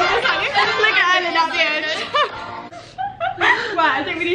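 Several young women talking over one another and laughing.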